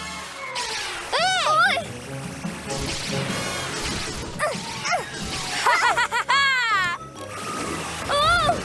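Cartoon soundtrack: background music under several short wordless vocal exclamations from the animated characters, with a stretch of hissy sound-effect noise midway.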